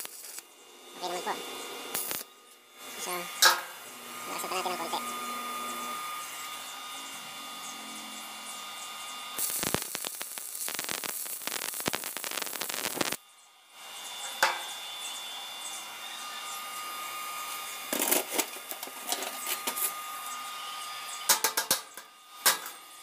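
Stick welding with a mini welding machine: the electrode arc crackling and hissing as the rod burns. The arc is loudest and most continuous for a few seconds around the middle, with shorter strikes later on.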